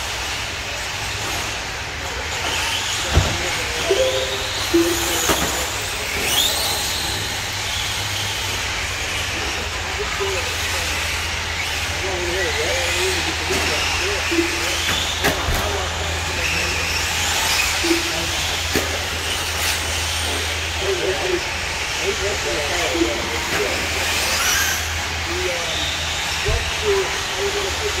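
1/10th-scale RC short course trucks racing, their motors whining and rising and falling in pitch as they accelerate and brake.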